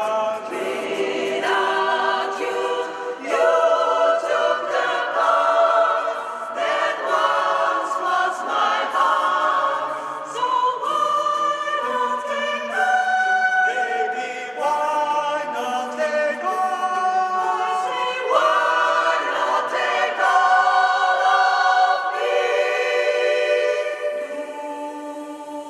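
Mixed-voice choir of men and women singing a cappella, holding sustained chords that shift every second or two.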